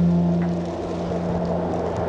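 Background music: a low sustained chord held steady, slowly fading.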